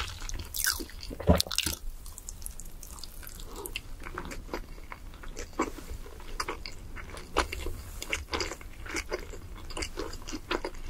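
A person chewing a mouthful of crispy fried chicken close to a clip-on microphone. The chewing makes a quick, irregular run of wet crunches and clicks, with one loud crunch about a second in.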